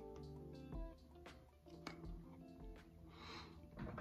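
Faint background music of held notes, with a few soft clicks in the first two seconds and a short breathy hiss about three seconds in.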